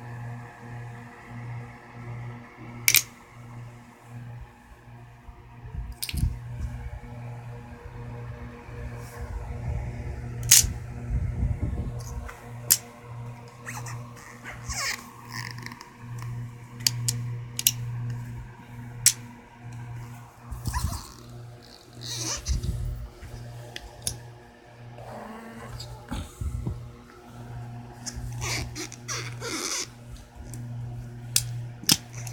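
Steel hex nuts clicking sharply, one at a time, as they snap onto and pile up on a large neodymium block magnet, with small rattles as the cluster is handled. Music plays steadily in the background.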